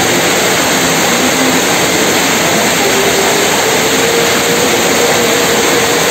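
Heavy rain pouring down, a loud, even hiss. About halfway through a faint, steady hum from the approaching train joins it and holds.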